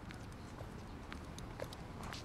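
Faint footsteps of a marching officer, his heels striking the paving about twice a second, over a low outdoor rumble.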